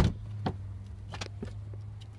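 A Dodge Caravan's fold-down third-row seat being worked by hand: a sharp knock at the start, then a couple of lighter clicks and clunks from the latches, over a steady low hum.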